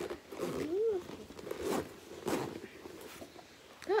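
A short wordless voice sound, one rise and fall in pitch, about half a second in, followed by a few short rustling, handling noises of clothing and objects being moved on a sofa.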